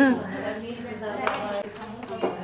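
Serving spoon and ceramic plates clinking against steel serving pots as rice is dished out, with one sharp clink a little over a second in. Women's voices and chatter run underneath.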